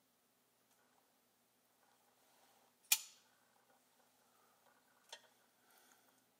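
DB Fraley Master Splinter 5.0 custom flipper knife flipped open: one sharp metallic click about three seconds in as the blade snaps out and locks, after a faint rustle of handling. A smaller click follows about two seconds later.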